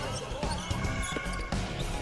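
Basketball being dribbled on a hardwood court, under background music.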